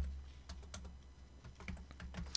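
Computer keyboard being typed on: a handful of separate, irregularly spaced key clicks.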